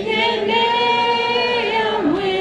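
A youth choir of boys and girls singing together, holding one long note that changes pitch near the end.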